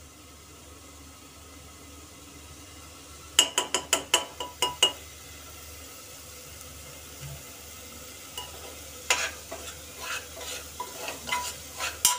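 A metal spoon clinks quickly about eight times against a cooking pot a few seconds in. From about nine seconds a ladle knocks and scrapes as it stirs onion-and-spice masala frying in oil in a pressure cooker, over a low sizzle.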